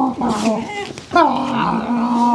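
Beagles whining and yowling in excited greeting, in drawn-out calls that fall in pitch, mixed with a man's voice.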